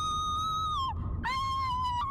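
Two long, shrill pressure-cooker whistles, each held on one steady note and sliding down in pitch as it ends. The first stops about a second in and the second, slightly lower, follows right after.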